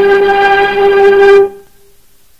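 Dramatic film-score music: one loud held note, rich in overtones, that cuts off abruptly about one and a half seconds in.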